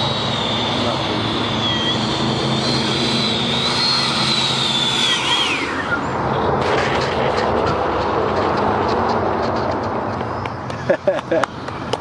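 Electric ducted fan of a Freewing F/A-18 90 mm EDF jet running with a high, wavering whine, then spooling down in a steep falling whine about five to six seconds in as the jet lands and rolls out on the runway. A steady rushing noise carries on afterwards, and a voice comes in near the end.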